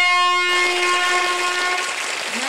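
Loud horn or whistle sound effect: one steady held tone, joined about half a second in by a rushing hiss that carries on after the tone fades near the end.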